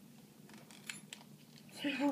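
A couple of faint clicks about a second in, a flashlight's switch being pressed without the light coming on: the flashlight is dead.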